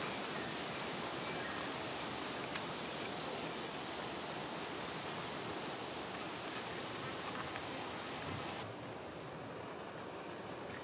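Steady outdoor background hiss with a few faint light clicks; it drops to a quieter level near the end.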